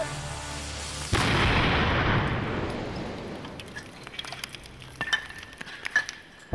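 A replica ninja uzumebi bomb, a wooden box holding about a pound of gunpowder buried in a pile of earth, goes off about a second in with a sudden, really surprisingly loud crash. The blast fades away over a few seconds, with scattered small clicks near the end.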